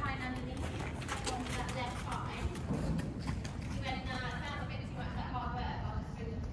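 A horse's hoofbeats on the soft surface of an indoor arena as it passes close by, with a woman's voice talking over them.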